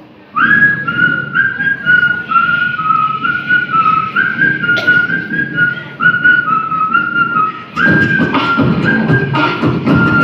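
Live group beatboxing with a whistled tune over the beat: short whistled notes stepping up and down, starting about half a second in. Near the end the beat grows louder and busier.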